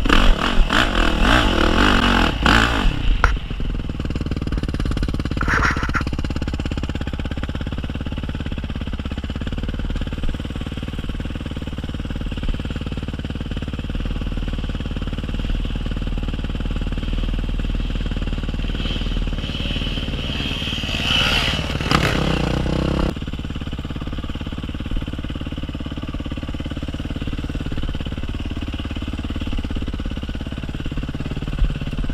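Yamaha single-cylinder dirt bike engine revving hard under load on a steep dirt climb for the first three seconds, then running steadier at lower revs along the trail. Near the end it revs up briefly once more before easing off.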